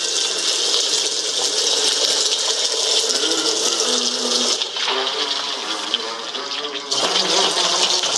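A man urinating in a long, loud stream into a urinal, heard through a microphone and loudspeaker. The stream breaks off about five seconds in and starts again about two seconds later.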